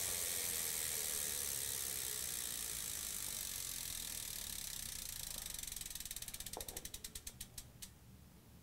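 Road bike's rear freewheel ticking as the wheel coasts to a stop after pedaling ends: a fading whir, then clicks that slow down and stop near the end.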